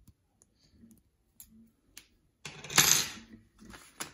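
Faint clicks of a pointed metal tool working on a metal lens bayonet mount, then, about two and a half seconds in, a louder scraping clatter of the metal ring being handled and set down on a paper envelope, with a smaller scrape just after.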